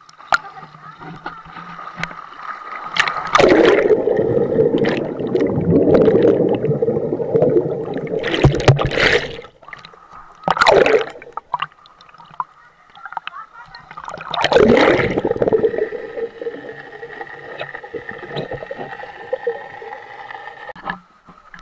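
Action camera moving through swimming-pool water at the surface and under it: muffled water noise, splashing and gurgling close to the microphone, loud in two long stretches and once briefly between them.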